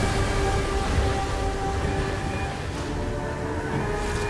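Tense orchestral film score with sustained held notes over a low rumbling rush of wind-blown sand. The rumble eases after the first second or so.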